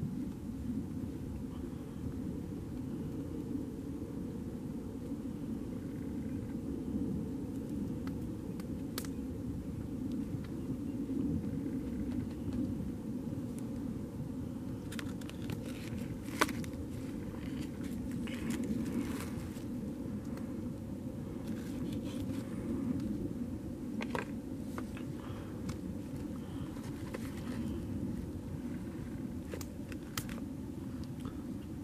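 Light clicks and scrapes of a metal fork against a plate as seasoning is spread on a raw steak, scattered and mostly in the second half, one sharper click about halfway through. Under them is a steady low rumble.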